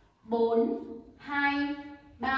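A woman's voice counting dance beats aloud: two drawn-out spoken counts about a second apart.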